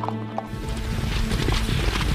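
Dubbed-in sound effect of several horses galloping: a dense clatter of hoofbeats that starts about half a second in, laid over background music.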